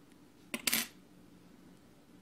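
A single short metallic clink about half a second in, a small metal object knocking against the metal of the vape mod or atomizer deck while cotton wick is being fed through the coils.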